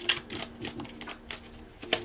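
Tarot deck being shuffled by hand: an uneven run of light card clicks and flutters, with a sharper snap at the start and another just before the end.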